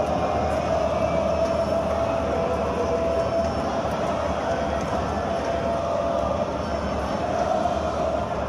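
Large football crowd singing a chant in unison, a continuous massed-voice sound with a held, slowly shifting pitch.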